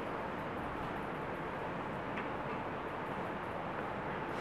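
Steady room noise of a lecture classroom, an even hiss, with one faint tap about two seconds in.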